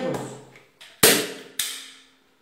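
Manual staple gun firing: two sharp snaps about half a second apart, the first the louder, as staples are driven through upholstery fabric into a wooden chair seat board.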